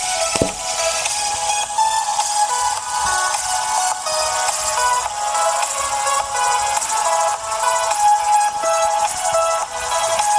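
Electronic music playing through the small built-in speaker of a blue Bluetooth LED fidget spinner, sounding thin and tinny, with no bass.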